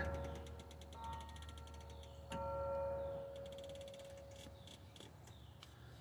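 Seat belt webbing being slowly reeled back into the roof-mounted retractor of a rear center seat belt, its automatic locking retractor ratcheting with faint, rapid clicking, the sign that it is still in locked mode until enough belt has gone back in. A sharper single click comes a little over two seconds in.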